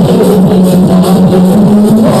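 Loud live band music with a steady drum beat and a sustained low bass tone.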